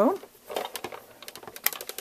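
Sizzix Big Shot die-cutting machine being hand-cranked. The cutting plates and die feed through its rollers with a run of irregular clicks, thickest near the end.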